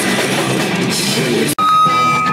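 A loud heavy band playing live: distorted electric guitars and a drum kit. About one and a half seconds in it cuts off abruptly, and a different, cleaner piece of music with steady held notes takes over.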